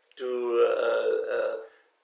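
A man's single drawn-out vocal sound, about a second and a half long, starting a little higher in pitch, sliding down, then holding steady; it sounds like a long hesitation "uhhh" or a belch.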